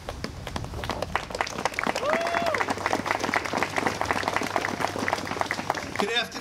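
Crowd applauding with many hands clapping outdoors, building up after about a second. A single short voice call rises and falls about two seconds in.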